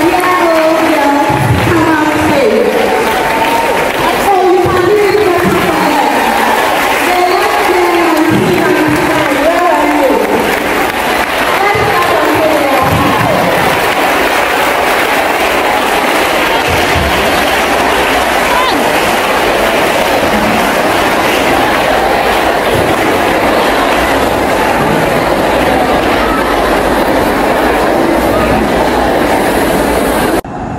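A large crowd of voices in a hall. In the first dozen seconds or so, singing and calling voices stand out; after that it becomes a steady, dense din of crowd chatter and cheering.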